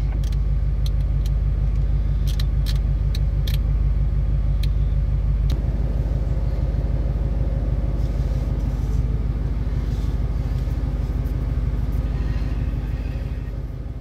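Steady low rumble of a car heard from inside the cab, with a few sharp clicks in the first few seconds. The rumble eases slightly near the end.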